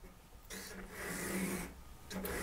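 A pastel stick rubbing across pastel paper: one dry, scratchy stroke lasting about a second, starting about half a second in.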